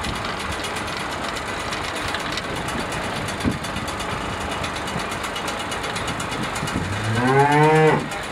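A cow in a livestock trailer gives one long moo near the end, rising in pitch. A steady rushing noise carries on underneath.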